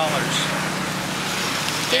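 A steady low hum under an even rushing background noise, the kind of sound motor traffic makes.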